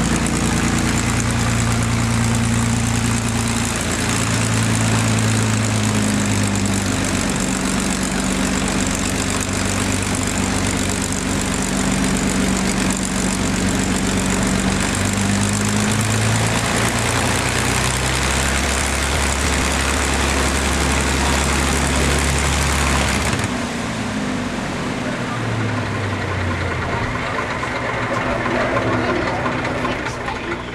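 P-51D Mustang's Packard Merlin V-12 engine running at low power on the ground, a loud steady roar with shifting low tones. About three-quarters of the way through the sound drops abruptly and the remaining tones slide down as the propeller slows.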